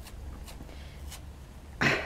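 A quiet room with a few faint ticks from hands handling stuffing wadding, then a short breathy exhale from a woman near the end.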